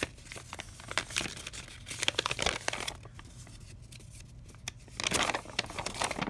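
Sheets of writing paper rustling and crinkling as a folded letter is unfolded by hand, with a denser burst of crinkling about five seconds in.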